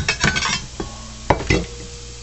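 Dry crackling of onion skin being pulled off in the first half-second, then two sharp knocks of a chef's knife on a wooden cutting board a fraction of a second apart, with bacon sizzling faintly in a pan.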